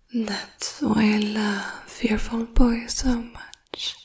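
A woman speaking in a soft whisper.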